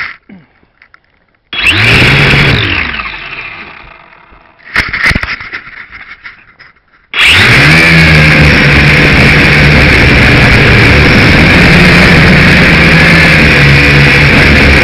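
Small quadcopter's electric motors and propellers heard through its onboard camera: a sudden spin-up about a second and a half in that winds down, falling in pitch, a second short burst, then from about seven seconds a loud steady buzz as it flies.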